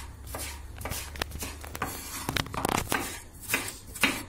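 Chef's knife slicing and dicing tomatoes on a wooden cutting board: irregular knocks of the blade against the board.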